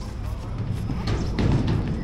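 Wind buffeting the microphone with a low, uneven rumble, with a few footsteps on a metal pontoon and faint voices of people nearby.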